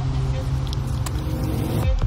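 Background music: a low, steady droning pad.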